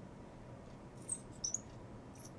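Marker squeaking on lightboard glass while an arrow is drawn: a few short, faint, high squeaks about a second in and again around a second and a half.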